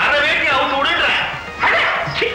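Film soundtrack of background music with a voice making dog-like yelping cries over it.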